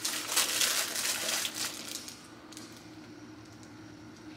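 Plastic packaging crinkling and rustling as a bagged item is handled, busiest in the first half and dying down about halfway through.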